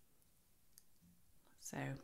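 Near silence with a few faint, scattered clicks, then a woman says "So" near the end.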